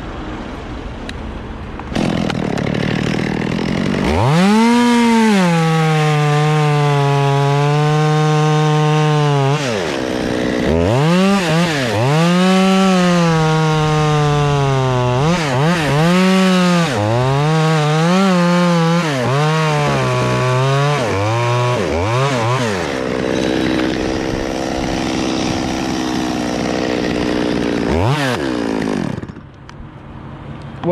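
Stihl two-stroke chainsaw revving and cutting through an oak stem, its pitch sagging under load and picking back up as the throttle is worked, over and over for most of the stretch. Then it runs at a steadier, lower pitch for several seconds, gives one last short rev, and goes quiet near the end.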